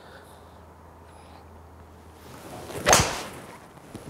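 A golf swing with a 2017 TaylorMade M2 hybrid (rescue) club: a brief rising swish of the club, then one sharp crack of clubhead on ball about three seconds in. The ball is struck low on the face, a bottomed strike.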